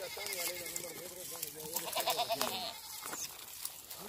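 A goat bleating in one long, quavering call that lasts about two and a half seconds and ends before the last second.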